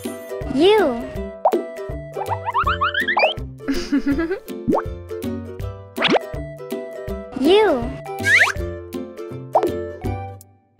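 Children's background music with cartoon sound effects laid over it: several quick pitch-bending swoops and plops.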